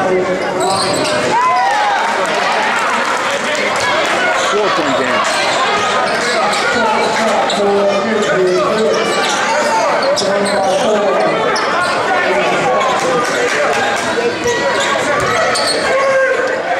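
A basketball being dribbled on a hardwood gym floor under the steady chatter of a crowd of spectators, echoing in the gym.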